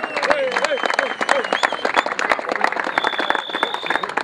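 A group of people applauding, dense uneven clapping with voices calling out over it and a steady high whistle in the last second.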